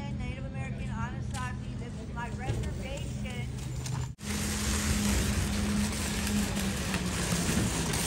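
Voices in the background over a steady low hum. About halfway through, the sound changes suddenly to a loud, steady rushing noise.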